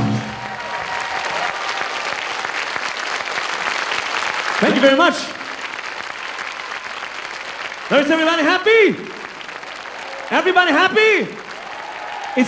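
Concert audience applauding as a song ends, dying down over about five seconds. A man's voice comes over the hall's microphone in three short phrases.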